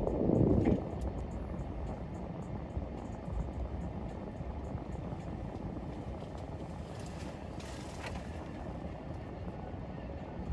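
Steady low rumble of a vehicle's engine idling, heard from inside the cab. A brief louder noise in the first second.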